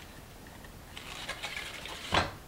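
Faint rustling and light clicks of hands handling a strip of lace and a straight pin while pinning it in place, mostly in the second half.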